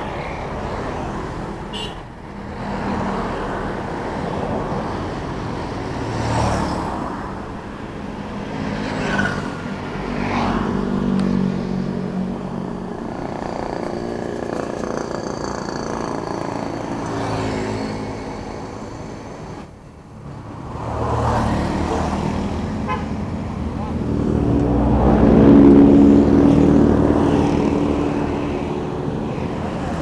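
Roadside traffic: motorcycles and cars passing by, their engine sounds swelling and fading, with the loudest pass near the end.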